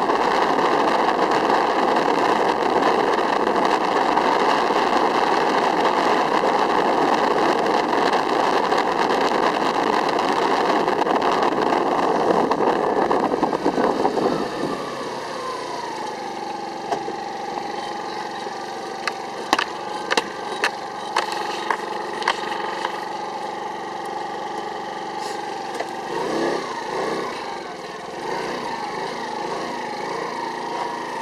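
Small motorbike engine running under way with road and wind noise. About halfway in, the noise drops and the engine settles to a steady idle hum, with several sharp clicks and a brief wavering sound near the end.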